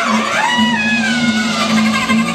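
Free-improvised music from a quartet of clarinet, voice, cello and drums: high pitches slide up and then fall away over a steady low held tone.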